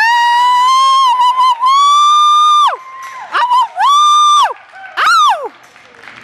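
Spectators whooping and screaming in celebration: four loud, high-pitched 'wooo' calls that each rise, hold and fall away. The first is the longest, nearly three seconds, followed by a short one, a second long one and a final brief one near the end.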